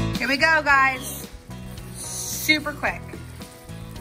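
Beef and mushroom stir fry sizzling in a hot stainless steel skillet. Background music cuts off at the start, and a person's voice is briefly heard just after and again near the end.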